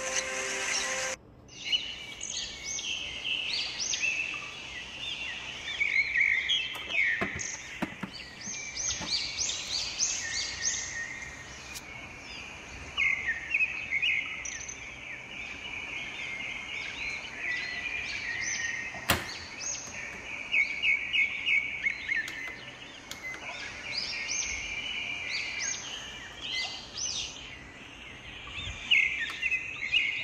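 Small birds chirping and twittering without a break, a busy chorus of quick high chirps. A couple of sharp clicks sound under it, one about a third of the way in and one about two-thirds in.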